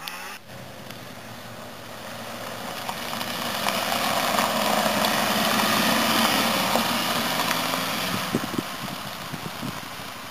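A white Audi A3 hatchback rally car driving past: its engine and tyre noise swell as it approaches, are loudest about five to six seconds in, then fade as it drives away. A few sharp clicks come near the end.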